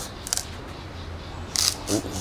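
Metal hand peeler scraping strips of skin off a pumpkin: short scraping strokes, one near the start and a louder one about a second and a half in. The pumpkin's skin is hard and takes a lot of force to peel.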